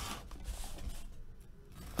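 Box cutter blade slicing through the packing tape on a cardboard case, a dry rasping scrape of blade on tape and cardboard, with a sharp click at the end.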